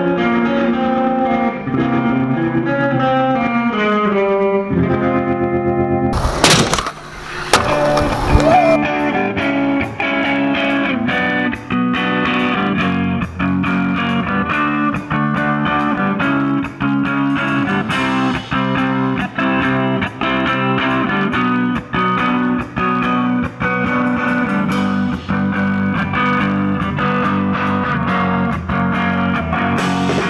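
Instrumental rock on electric guitar with the band: a picked guitar melody at first, a loud noisy burst of about two seconds around six seconds in, then a steady, evenly repeating rhythm for the rest.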